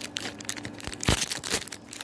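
Foil Pokémon booster-pack wrappers crinkling and crackling as they are handled, with the loudest crackle about a second in.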